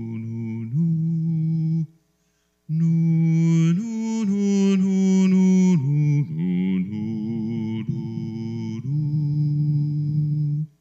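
A man singing a slow hymn tune solo and unaccompanied into a microphone: long held notes, with a short breath pause about two seconds in.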